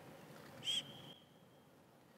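A single short bird chirp, a quick arched whistled note trailing off into a thin held tone, about two-thirds of a second in over faint background hiss.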